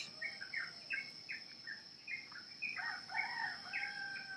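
Faint background birdsong: many short, repeated chirps, with one longer held call near the end, over a steady thin high-pitched tone.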